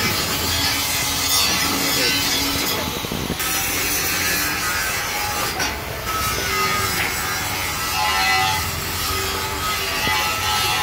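Grain-grinding hammer mill running, a loud steady noise with no breaks.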